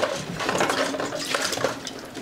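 Water poured from a small plastic bottle into a stainless-steel bowl, with metallic clinks and clatter as puppies push at the bowl.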